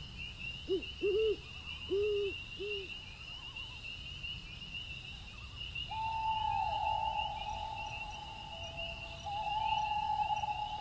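An owl hooting four times in the first few seconds over a steady high trill of night insects. About six seconds in, a long held tone begins, dips in pitch and carries on.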